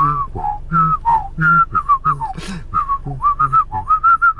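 A person whistling a quick, sliding melody by mouth while voicing low notes at the same time, so that whistle and voice sound together as two lines.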